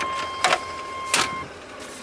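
Steady high electronic whine that cuts off suddenly partway through, with two short crackles: interference noise that sounds like a microphone that could use a tune-up.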